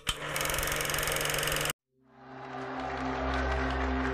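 A fast mechanical clatter with a low steady hum runs for about a second and a half and cuts off suddenly. After a brief silence, background music with sustained low tones fades in.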